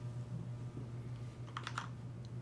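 About three quick computer keyboard key presses about a second and a half in, over a low steady hum.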